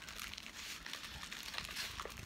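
Black plastic mailer bag crinkling and rustling in a continuous run of small crackles as it is handled and opened by hand.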